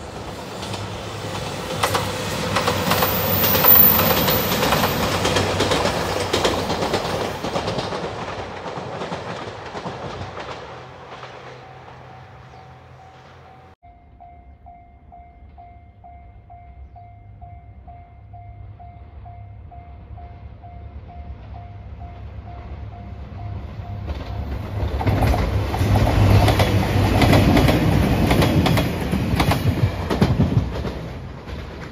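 A JR Shikoku 2700-series diesel limited express passing, its sound swelling and fading over about ten seconds. Then a railway level-crossing warning bell ringing with an even pulse for about ten seconds, before the same train passes close by and grows loud near the end.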